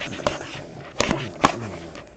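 Hard plastic card cases knocking and clacking against the table and each other as they are handled. There are several sharp clicks, the loudest about a second in and again half a second later.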